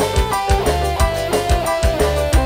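Live band playing an instrumental passage: an electric guitar melody over a steady drum beat and bass.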